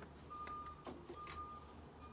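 A faint electronic beep, one steady high tone that sounds twice for about half a second, starting again near the end, over a few light clicks and rustles of packaging being handled.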